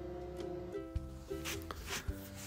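Quiet background music of a plucked ukulele, a few sustained notes changing one to the next.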